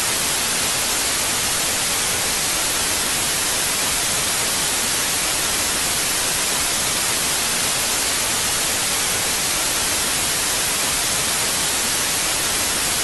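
Analog television static: a loud, steady hiss of white noise, brighter in the treble, with no change throughout.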